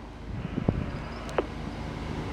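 Low, steady engine hum with wind on the microphone and a soft hiss of light rain. A single click comes about two-thirds of a second in, and a short falling squeak near the middle.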